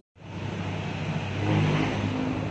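Suzuki Raider R150 Fi's single-cylinder four-stroke engine running steadily at idle through an aftermarket Apido exhaust pipe, getting a little louder about halfway through.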